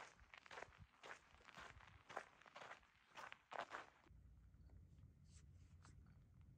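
Faint footsteps on a gravel trail, about two steps a second, stopping about four seconds in.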